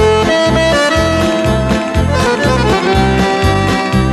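Instrumental music led by an accordion holding melody notes over a steady pulsing bass beat.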